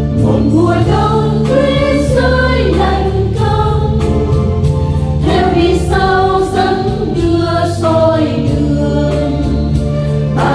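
Choir singing the opening lines of a Vietnamese Catholic hymn over sustained keyboard accompaniment.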